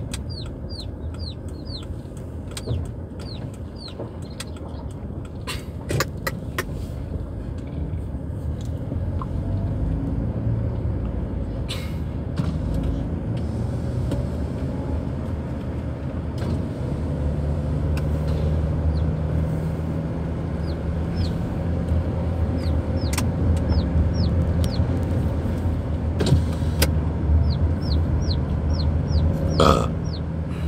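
Car cabin sound on the move: steady engine and tyre rumble with a few sharp knocks, and the engine hum steadying about halfway through. Runs of short, high, falling peeps, about three a second, near the start and again in the second half, from the Burma crossbreed chickens carried in the car.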